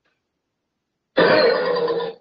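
Dead silence for about a second, then a loud, rough, strained vocal sound lasting about a second from a person on the video call.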